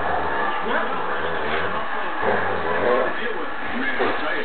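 Indistinct male speech of a fight broadcast's commentary over a steady background haze.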